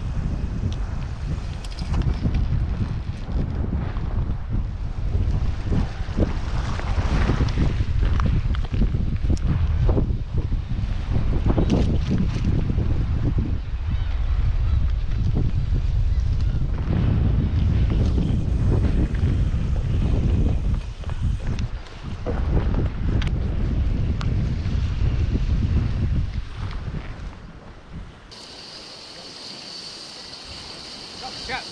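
Wind buffeting the microphone of an action camera, a heavy low rumble surging in gusts, over the wash of the sea. About two seconds before the end it cuts off, leaving a much quieter steady high hiss.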